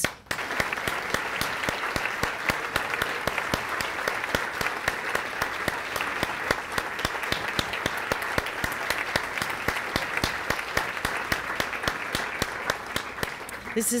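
A large audience applauding: many people clapping steadily, dying away near the end.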